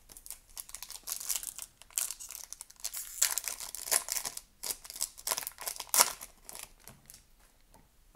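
Foil wrapper of a hockey card pack being torn open and crumpled in the hand: a run of irregular crinkling rustles that dies away about seven seconds in.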